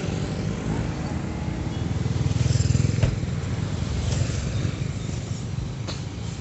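A motor vehicle engine running close by with a steady low rumble that swells to its loudest a little before the middle, with a sharp click at about the halfway point.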